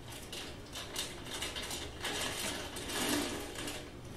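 A bag being handled and packed: quiet rustling with quick runs of small clicks, in uneven bursts.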